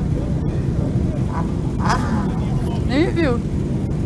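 Steady low rumble of a large group of motorcycles idling together. A brief voice call rises and falls about three seconds in.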